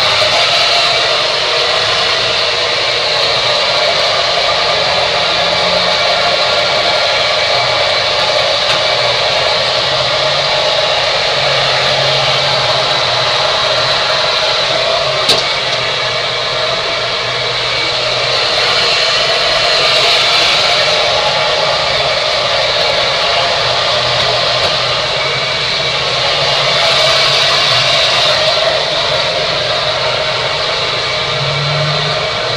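Handheld hair dryer blowing steadily as it dries wet curly hair, its rush swelling slightly a couple of times as it is moved about. One sharp click about halfway through.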